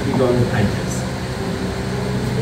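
Steady low hum of a room's air-conditioning or ventilation, with a brief spoken question at the start.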